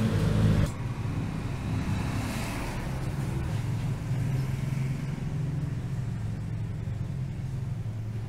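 A steady low hum runs throughout, with a louder low rumble in the first half-second or so.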